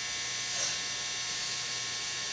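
Electric hair clippers running with a steady, even buzz as they line up the hairline at the forehead.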